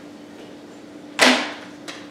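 A sharp plastic clack about a second in, then a lighter click near the end, as a DVD is handled for the next disc; a steady low hum runs underneath.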